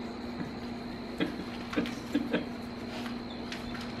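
A few short, stifled laughs, brief breathy bursts in the middle, over a steady low electrical hum.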